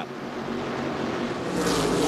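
Whelen Modified race cars' V8 engines running at racing speed, a pack on track. The sound grows louder about a second and a half in as cars come by the microphone.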